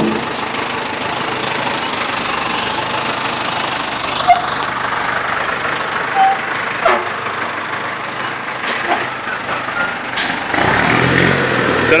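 VW 8-140 turbodiesel truck running with a steady rushing hiss from its turbocharger, which is fitted with a 'pente' (comb) to make it whistle or 'sing'. A few short sharp hisses or clicks break in. Near the end a deeper engine note rises.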